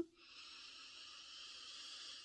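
A woman's slow, deep breath in, a steady airy draw lasting about two seconds.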